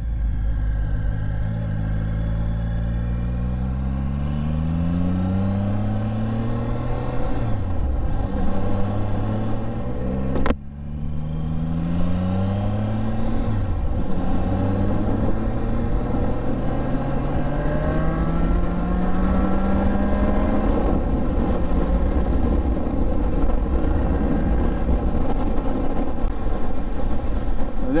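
A Triumph Speed Triple 1050's three-cylinder engine, fitted with an Arrow exhaust, accelerating hard up through the gears. The pitch rises and drops back at about four gear changes, with a brief cut about ten seconds in. The engine then runs at a steady pitch while cruising for the last several seconds.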